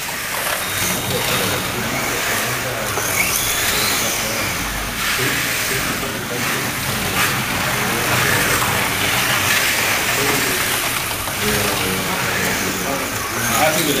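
Small electric motors of vintage slot cars whirring as the cars race around the track, with people talking in the background.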